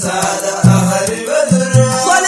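Sudanese Sufi madeeh (prophetic praise song) chanted by men's voices over heavy, low drum beats that land about three times.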